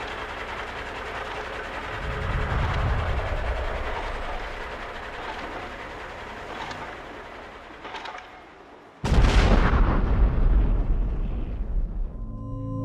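Sound-effect ambience of heavy mining machinery at work, a steady noisy rumble. About nine seconds in, a sudden loud explosion boom with a deep rumble that dies away slowly.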